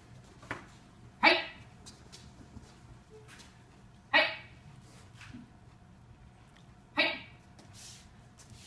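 A boy's sharp kiai shouts, three of them about three seconds apart, each brief. A single light click about half a second in.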